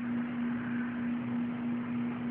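A steady low electrical hum with a soft hiss underneath: the background noise of the recording, heard in a pause between words.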